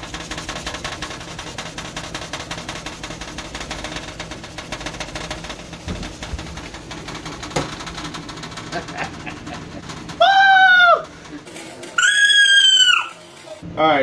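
A sponge scrubbing abrasive cleaning paste over the stained enamel burner ring of an electric stove, a steady rubbing. About ten seconds in come two loud high-pitched cries, each about a second long and falling in pitch at the end, the second higher than the first.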